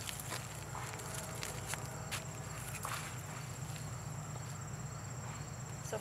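A few soft scuffs and taps from footsteps in flip-flops, spaced irregularly, over a steady low hum and a faint, steady high-pitched whine.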